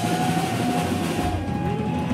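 Live rock band playing loud: a held high tone rings over a dense, distorted low rumble, with hardly any drum hits in this stretch.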